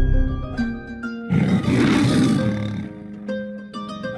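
A lion's roar, as on the MGM lion logo, lasting about a second and a half from about a second in. It comes between plucked, harp-like music notes.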